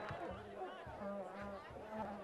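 Faint, indistinct voices over a low, steady background hum.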